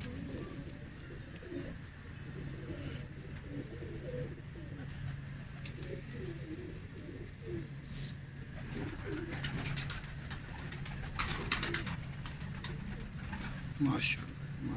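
Domestic pigeons cooing, low and repeated. There is a burst of rustling and clicking about two-thirds of the way through.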